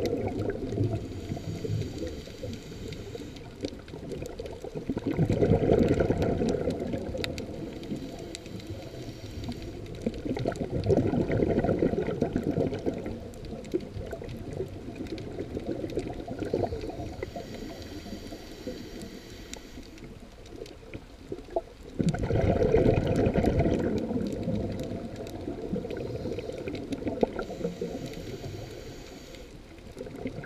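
Underwater water noise picked up through an underwater camera: a low, muffled rumble and gurgle that swells and fades every few seconds, rising sharply once about two-thirds of the way through.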